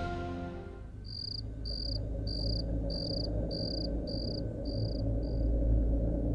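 A cricket chirping: about eight short, evenly spaced high chirps, roughly two a second, starting about a second in, the last one fainter, over a low steady hum. The tail of background music fades out in the first second.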